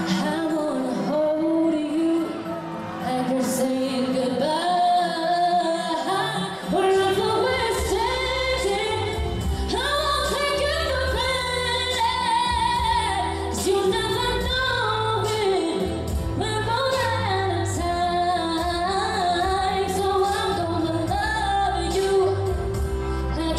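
A female pop singer sings live into a microphone over a pop backing track played through PA speakers. The bass and beat of the track come in about seven seconds in.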